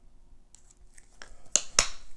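Sharp plastic clicks and crackles from handling a squeeze tube of acrylic paint and a wooden stir stick over a plastic cup. They start about halfway in, with the loudest two close together near the end.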